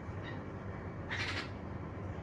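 A bulbul giving one short call about a second in, with a fainter call just before it, over a steady low hum.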